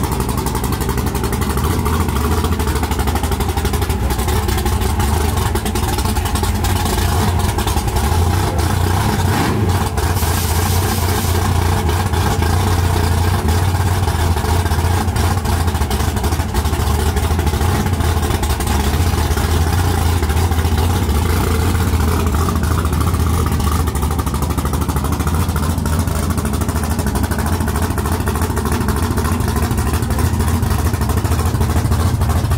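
Fox-body Ford Mustang drag car's engine idling loudly and steadily, with a brief hiss about ten seconds in.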